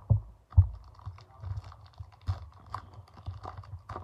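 A stack of trading cards set down on a wooden table with a couple of dull knocks, then a card-pack wrapper crinkling and tearing open in many small crackles and ticks.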